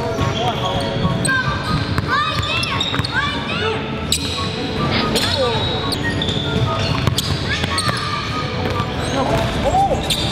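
Basketball sneakers squeaking on a hardwood gym floor and a basketball bouncing during one-on-one play. The short squeaks come in a cluster about two to four seconds in and again near the end, with voices murmuring in the background.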